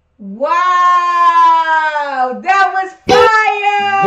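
A person's long, high-pitched excited vocal cry, a held 'whoo'-like squeal of about two seconds that falls slightly in pitch near its end. Two shorter cries follow about a second later.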